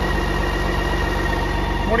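BMW K1600 GT's inline-six engine idling steadily, a constant even hum with fine regular pulsing.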